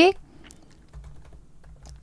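Typing on a computer keyboard: a few faint key clicks.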